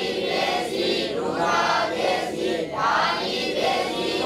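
A group of voices chanting together in unison without a break: a class reciting a grammar lesson aloud.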